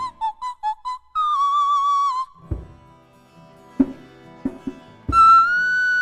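High wordless singing with a djembe: a quick run of short notes, then a held note with vibrato, then djembe hand strikes, and another long high note near the end.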